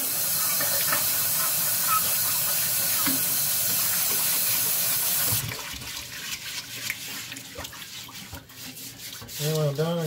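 Kitchen tap running hard into a cast iron skillet in a stainless steel sink while a bristle brush scrubs the pan; the water cuts off about five seconds in. After that the stiff brush keeps scrubbing the wet cast iron, with small splashes of water in the pan.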